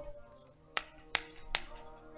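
Harmonium holding sustained chords as accompaniment to Sikh kirtan, with three sharp percussion strikes in steady rhythm, about 0.4 s apart, in the second half.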